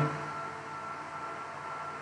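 Steady background hiss with a faint, even hum and a thin steady high tone: the recording's room and microphone noise.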